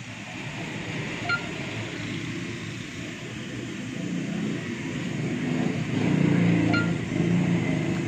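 Samsung front-load washing machine running a cotton wash cycle: a steady low motor hum and drum rumble that swells about four seconds in and eases slightly near the end.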